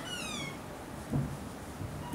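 A short high-pitched squeak that slides down in pitch over about half a second, followed about a second later by a soft low thump, over quiet room tone.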